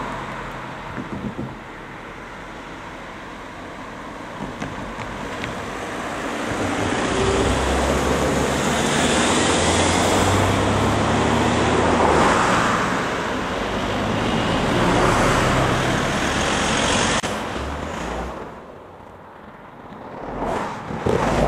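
Road traffic: a line of cars driving past close by. The tyre and engine noise swells a few seconds in, stays loud for about ten seconds, and dies away near the end.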